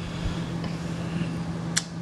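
Steady low hum with even background hiss: room tone of a remote broadcast line. One sharp click comes near the end.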